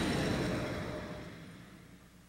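A soft rushing noise on a TV commercial's soundtrack, fading away steadily over about two seconds almost to silence.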